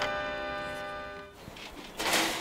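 Yamaha's rooftop music siren, a bank of rotary sirens each tuned to its own pitch, holding a chord of several steady notes that fades away about a second and a half in.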